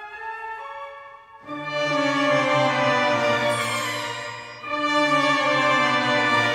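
Opera orchestra playing without voices: a few quiet held notes, then about a second and a half in the full orchestra comes in loudly with sustained chords. The sound eases briefly and swells again shortly before the end.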